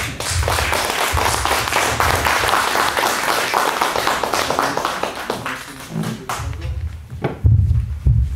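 Audience applauding: a dense burst of clapping that dies away about six seconds in.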